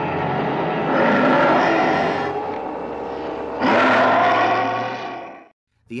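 Horror TV soundtrack: sustained, dense dramatic music that surges loudly twice, then fades out and stops suddenly about half a second before the end.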